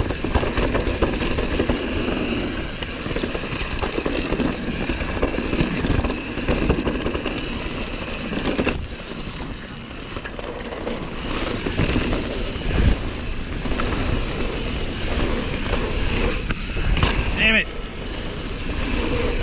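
Mountain bike riding fast down a rough dirt trail: tyres on dirt and roots and the bike rattling over bumps, with wind on the camera microphone.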